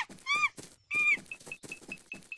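Cartoon monkeys calling, as a sound effect: three short squeals that rise and fall, then a quick run of short high pips.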